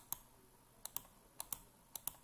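Computer keyboard keys being tapped: a few faint, sharp clicks in close pairs, about four pairs spread across two seconds.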